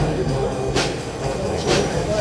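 A school concert band of flutes, clarinets and brass playing, with a bright percussion stroke about once a second.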